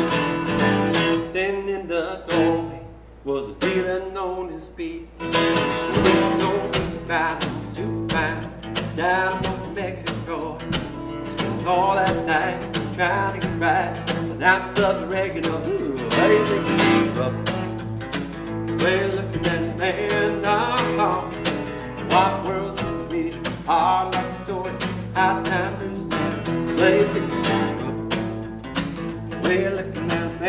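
A man singing to his own strummed acoustic guitar, live.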